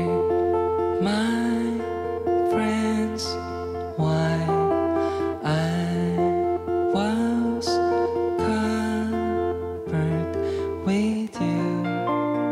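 Slow live acoustic pop ballad: fingerpicked acoustic guitar over sustained keyboard chords, with a soft male voice singing phrases that scoop up into their notes.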